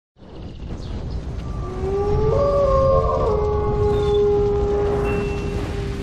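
Cinematic intro sound effect: a deep rumble under several tones that glide upward, then hold steady as a sustained chord, building toward a hit.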